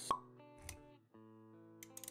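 Intro music with sound effects: a sharp pop right at the start, then held notes, with a short break about a second in and a few clicks.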